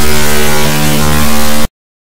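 A loud, harsh electronic buzz with many steady tones, starting abruptly and cutting off suddenly about one and a half seconds in, between gaps of dead silence: an audio glitch in the recording rather than any sound in the room.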